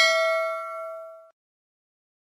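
A notification-bell ding sound effect: one bright bell strike that rings on several steady tones and stops abruptly about a second and a quarter in.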